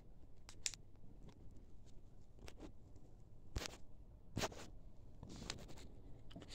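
Faint handling noise: scattered light clicks and taps, the clearest two about three and a half and four and a half seconds in, with a few more near the end.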